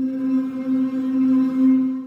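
Omnisphere's 'Bat Sanctuary 1', a Composite Morphing sound source, playing its audition note: one synth note held at a steady pitch, with many overtones above it, starting to fade at the very end.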